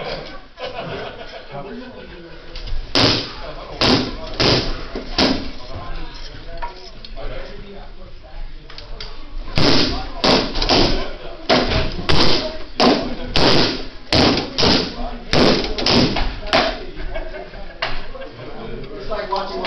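Rattan weapons striking in SCA heavy-combat sparring: a few separate blows about three seconds in, then a quick run of about two sharp hits a second from near the ten-second mark until just before the end.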